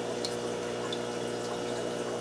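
A steady wash of trickling water with a faint low hum underneath, as from aquarium water and equipment running, with no distinct splashes.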